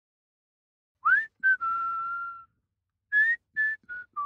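Whistling a short tune, starting about a second in: a note sliding upward, a short note, then a long held note, and after a pause three quick short notes.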